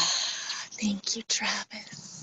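A woman's breathy, whispered voice: a long rush of breath at the start, then a few short voiced sounds.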